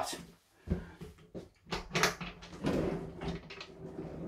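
A series of knocks and clicks from a wooden vanity-unit drawer being handled and pulled open under a washbasin.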